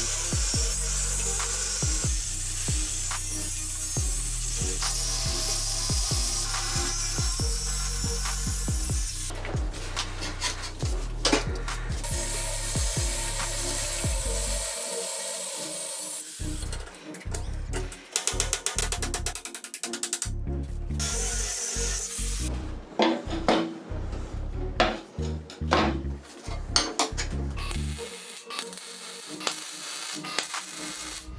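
Angle grinder with a thin cut-off disc cutting steel flat bar: a steady, harsh grinding noise through the first half. Background music runs underneath. After about the middle the sound breaks up into short bursts and sharp clicks.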